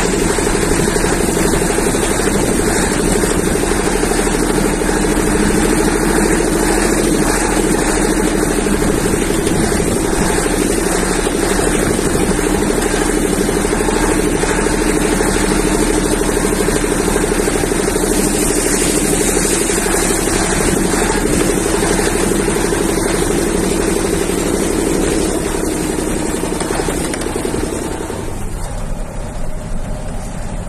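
Vehicle engine running with steady road noise, heard from inside the cab while driving slowly on a rough dirt track; the drone drops away near the end.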